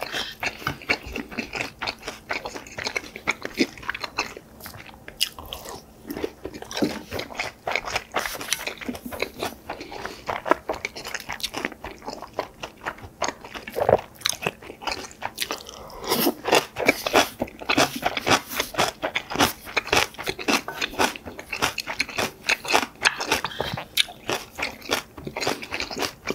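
Close-miked chewing of mouthfuls of yukhoe bibimbap and napa cabbage kimchi, a dense run of short sharp crunches and mouth clicks with no pause longer than a moment.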